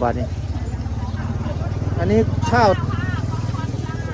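A small engine running steadily at idle, a low, even hum that continues throughout.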